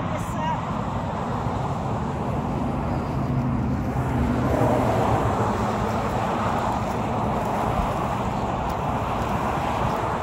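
Steady road traffic noise, swelling a little around the middle.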